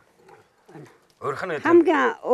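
A person's voice: after about a second of near quiet, someone starts speaking loudly about a second in.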